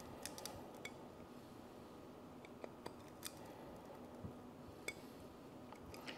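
Faint, scattered small clicks and snips of a hand tool cutting bit by bit through the brittle plastic of a clear pour-over coffee dripper.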